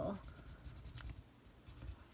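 A burnishing stick rubbed over a rub-on transfer on a planner page: faint scratchy strokes, with a sharp click about a second in.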